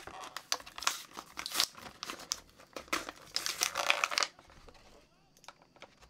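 Action-figure packaging being handled and crinkled: a dense run of crackles that stops about four seconds in.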